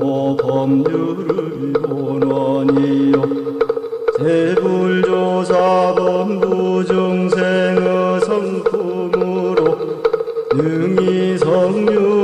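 Chanted recitation of a Won Buddhist scripture in Korean, the voice holding long, drawn-out notes phrase by phrase, with new phrases sliding up into a higher held note about four seconds in and again near the end. A steady drone-like tone and light, regular percussive ticks run underneath.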